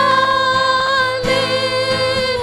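Women singing a Christian worship song into microphones, holding one long note, over a steady low accompaniment.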